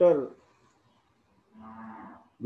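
A man's voice over a video call: a spoken word trailing off, a pause of about a second, then a soft drawn-out hum held at one steady pitch.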